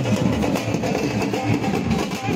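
Loud, dense dance music from a wedding procession: drums beating quickly under a full, busy band sound.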